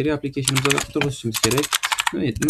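Typing on a computer keyboard: a quick run of key clicks starting about half a second in, under a man's speech.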